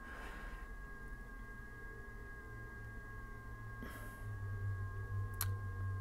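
Two steady high tones, the audio of FT8 digital signals from the Icom IC-7700 transceiver's speaker, over a low hum. A single sharp click comes near the end.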